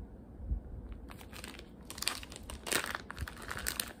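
Clear plastic zip-top bag crinkling as it is handled, a run of short crackles starting about a second in.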